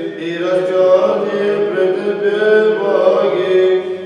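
Solo male voice chanting a liturgical reading in Orthodox church style: a sustained recitation on long held notes that drift slowly in pitch, with a short breath break near the end.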